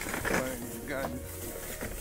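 Thin plastic shopping bag crinkling as a hand rummages inside it, with low muttering.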